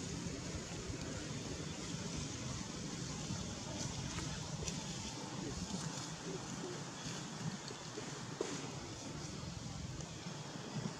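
Steady outdoor background noise: a low rumble with a haze of wind, broken only by a few faint small clicks.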